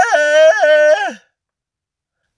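A man's voice giving one long, drawn-out cry of disgust in a raised pitch, wavering a few times, voicing a crowd's reaction. It stops a little over a second in.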